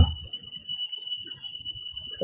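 A steady, high-pitched whine of several thin tones held over a faint low background noise, in a pause in the speech.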